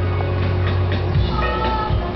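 Television music playing. A little over a second in, a brief high-pitched wail is held for about half a second.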